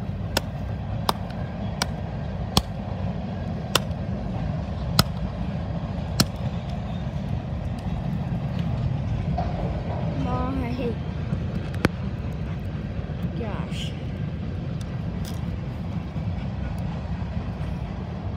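Hammer striking phone parts: a series of sharp knocks, about seven in the first six seconds and one more near the end, over a steady low rumble.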